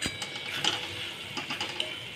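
Metal spoon stirring a thick, wet vegetable mixture in a metal kadhai, with a few scattered clicks and scrapes of the spoon against the pan.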